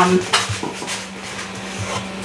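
Kitchenware being handled on a counter: a sharp knock about a third of a second in, then lighter clatter, over a steady low hum.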